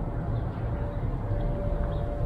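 Steady low outdoor background rumble, with a faint steady hum that comes in partway through.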